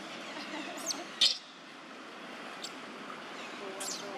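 Baby macaques giving a few short, high-pitched squeaks, the loudest about a second in and another near the end.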